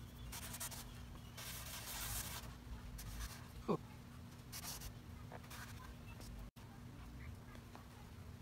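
Faint, intermittent rubbing of a damp cloth over a wood tabletop, wiping excess wood filler off the surface. One short squeak about halfway through.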